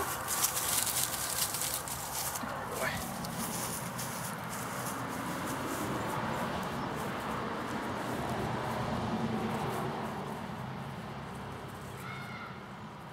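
Footsteps walking across lawn grass, with brushing and rustling that is busiest in the first three seconds, then a steady outdoor background.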